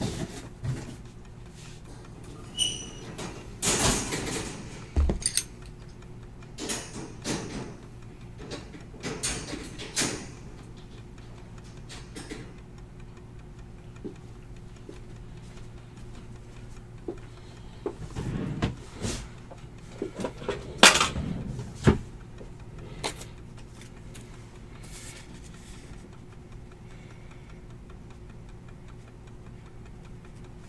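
Cardboard hobby boxes being handled, slid and set down on a table: scattered knocks, scrapes and rustles in two bursts, the loudest about 21 seconds in, over a steady low electrical hum.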